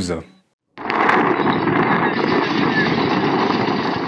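Steady, loud rushing noise from a phone recording at a burning factory, starting abruptly about a second in, with no single sharp blast.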